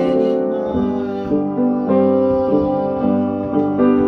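Piano playing a slow ballad: sustained chords, with a new chord struck every half second or so.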